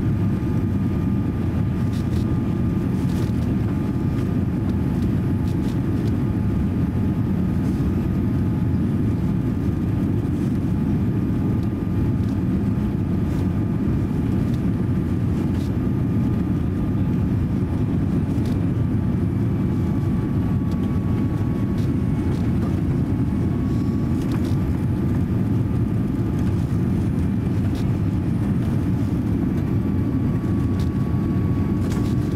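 Steady cabin noise inside a Boeing 787-8 airliner on final approach: a deep, even rush of engine and airflow noise with faint thin whining tones above it, one of which wavers slightly about two-thirds of the way through.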